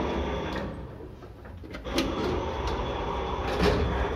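1984 SamLZ passenger lift at work: its automatic sliding car doors and mechanism run noisily over a low hum. The noise drops about a second in, then comes a sharp click about two seconds in and the running noise builds again, with another click near the end.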